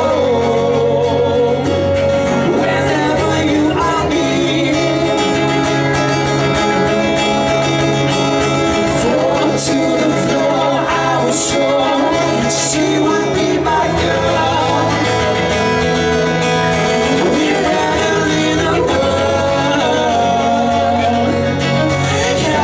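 Live band playing a song: guitar with a singer's voice, continuous and loud.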